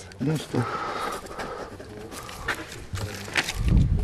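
Voices talking quietly, with a couple of sharp clicks midway and a low rumble on the microphone in the last half second.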